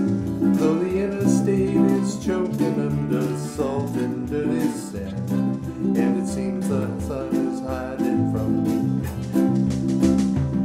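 Small band playing a mid-tempo pop song: two ukuleles strummed over an electric bass line and a drum kit keeping a steady beat.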